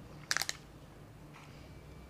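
Plastic candy wrapper crinkling in the hands: a quick cluster of sharp crackles about half a second in, then only faint handling.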